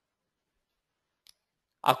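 Near silence with a single faint, brief click about a second in, then a man starts speaking in Italian near the end.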